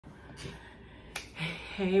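A faint tick, then a single sharp click just over a second in, followed by a woman's voice starting with a drawn-out "hey".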